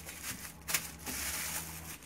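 A thin plastic bag crinkling and rustling as it is knotted shut and pressed flat to push the air out, with a sharp crackle about three-quarters of a second in.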